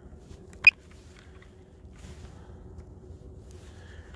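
A single short, high beep about two-thirds of a second in, from the DJI Mavic Air's remote controller as its flight-mode switch is flipped to Sport mode, over a faint steady hum.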